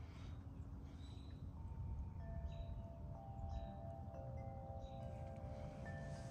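Faint chime ringing: several held notes come in one after another from about a second and a half in and overlap, over a low rumble.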